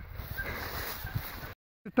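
Wind buffeting and handling noise on a handheld camera's microphone as its holder walks through grass. The sound cuts to dead silence briefly near the end.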